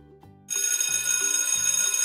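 Alarm-clock bell ringing, a loud, rapid metallic ring that starts about half a second in and keeps going: the countdown timer has run out. A light background music loop plays under it.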